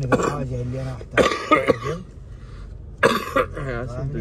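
Coughing, in two bouts about a second in and again near the end, between stretches of a person's voice.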